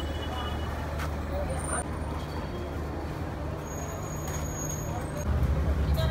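Street traffic noise with the low steady hum of a vehicle engine, which grows louder about five seconds in.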